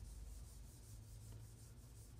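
Faint, quick rubbing of a hand sweeping across the glass of an interactive touch-screen whiteboard while erasing, over a low steady hum.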